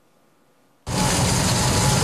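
Scallops searing in hot oil in a frying pan, sizzling loudly. The sizzle cuts in suddenly just under a second in, after near silence.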